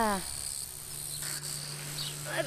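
Crickets chirping steadily in high grass, a continuous high-pitched drone, with a low steady hum coming in under a second in.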